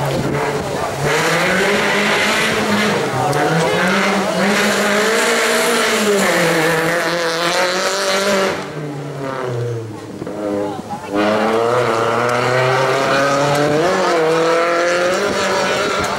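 Volkswagen Lupo slalom race car's engine revving hard, its pitch climbing and falling with throttle and gear changes. About nine seconds in the engine drops away for a couple of seconds, then pulls hard again.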